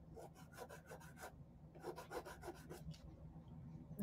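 Faint, quick scraping strokes of a small wooden craft piece being rubbed down by hand, in two runs of about a second each at roughly eight strokes a second.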